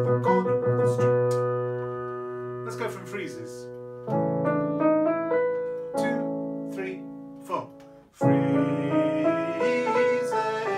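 Nord Stage 3 stage keyboard playing sustained piano chords. Each chord is struck and left to fade. A new chord comes in about four seconds in and another just after eight seconds.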